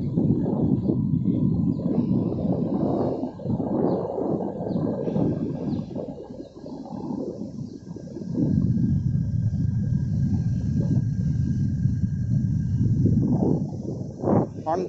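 Low, fluctuating rumble of a vehicle on the move, with wind buffeting the microphone; it dips for a couple of seconds in the middle.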